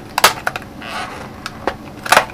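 Small cardboard box being pried open by hand: a few sharp clicks and snaps of the stiff card, the loudest about a quarter second in, with a short scraping rustle about a second in.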